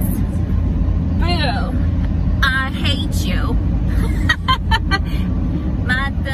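Steady low road and engine rumble inside a car cabin, under women's voices singing and vocalizing in short, unworded phrases. About a second in there is a sliding sung note, and a run of short, quick vocal bursts comes near the end.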